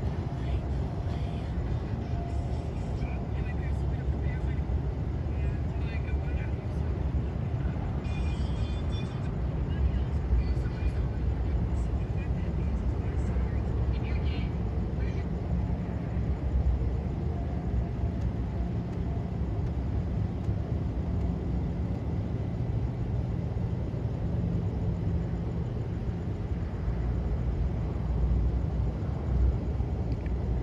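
Steady low hum of a police patrol car's engine idling close by, with a few faint short sounds over it.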